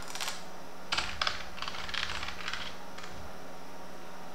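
Computer keyboard typing: key clicks at the start, then a quick run of keystrokes from about one to three seconds in. A faint steady hum sits underneath.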